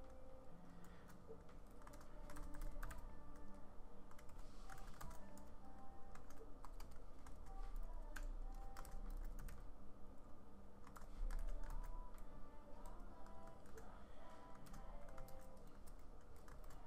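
Typing on a computer keyboard: irregular runs of key clicks with short pauses.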